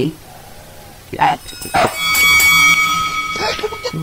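Two short, sharp dog barks, then a steady ringing tone of several pitches held for the last two seconds, an added sound effect marking the end of the fight.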